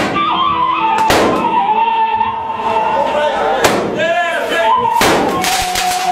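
A long gun fired repeatedly: a sharp bang about a second in, another in the middle, and a quick run of bangs near the end, each ringing on in the room.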